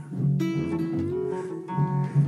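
Acoustic string-band music: rhythm guitar strumming, with a slide diddley bow holding one long note that slides slightly upward about a second in, and washtub bass underneath.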